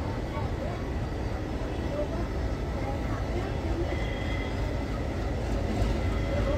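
WAG-12B electric freight locomotive and its goods train approaching slowly, a steady low rumble from the wheels on the rails.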